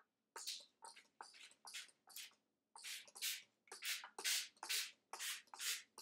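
Plastic trigger spray bottle spritzing water onto coffee filters: a quick run of more than a dozen short hissing squirts, two or three a second.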